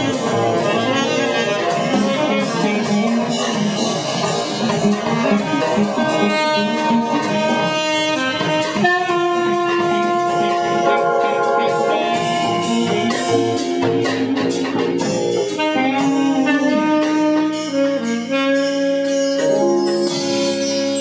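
A jazz-groove band playing: saxophone lines over a drum kit with steady cymbal hits, moving into long held notes about halfway through.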